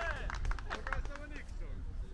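Indistinct voices over a steady low rumble, typical of wind on the microphone in an open field.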